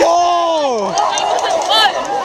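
A young man's drawn-out shout of "Let's go!", falling in pitch over about a second, over outdoor crowd chatter, with a brief high-pitched cry near the end.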